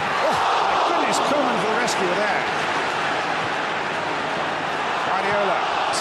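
Football stadium crowd noise: a large crowd roaring and shouting, a steady dense wash of many voices.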